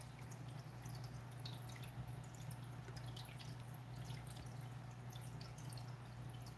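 Faint water dripping and trickling in a running aquarium, with a steady low hum underneath.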